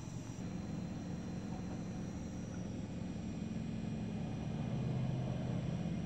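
Car engine and road noise heard from inside the cabin as the car drives, a steady low rumble that swells a little near the end.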